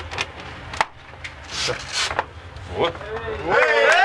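Dressing-room bustle: scattered knocks and clicks and brief voices. Half a second before the end, a group of men breaks into loud, drawn-out cheering shouts.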